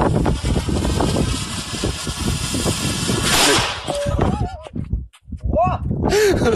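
Excited voices calling out over a rough rushing noise, with a short hiss about three seconds in. The noise breaks off, and the calls rise and fall in pitch near the end.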